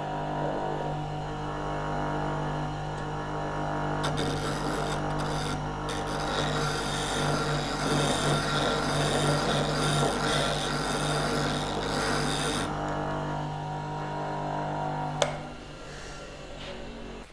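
Bench grinder running with a steady hum while a diamond dressing bar is drawn back and forth across its wheel, a gritty scraping from about four seconds in until near the thirteen-second mark: the wheel is being dressed to clear clogged metal from its face. A single click comes near the end.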